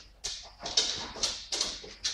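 Dog sniffing hard at a kitchen counter while searching for a scent: short, hissy breaths repeating about three times a second.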